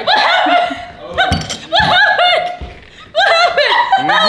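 Several women laughing together in high-pitched bursts that come in three rounds, with brief lulls between them.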